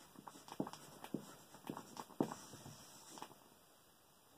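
Dry-erase marker writing on a whiteboard: a quick, irregular series of faint taps and short scratchy squeaks as the strokes go down, stopping about three and a half seconds in.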